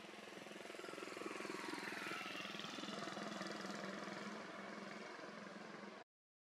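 A motor vehicle's engine running, growing louder over the first two seconds or so and then slowly fading, as a vehicle passing by.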